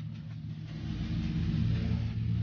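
Wire whisk stirring thick oat-and-chocolate-chip cookie dough in a plastic bowl, a soft scraping that grows a little louder in the second half, over a steady low rumble.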